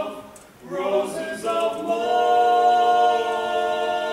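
Barbershop quartet singing a cappella in four-part close harmony. The singing drops away briefly under a second in, then comes back and swells into a long held chord.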